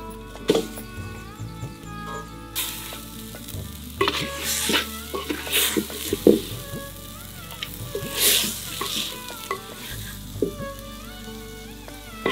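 Crushed country chicken sizzling in a hot clay pot and stirred with a wooden spatula, the spatula scraping and knocking against the pot. The sizzle swells in several bursts, the first about two and a half seconds in.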